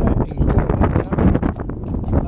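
A Friesian horse's hooves clip-clopping on a tarmac road at a walk as it pulls a carriage, with a low wind rumble on the microphone.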